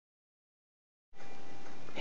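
Digital silence, then about a second in a steady hiss of room noise begins and holds at an even level.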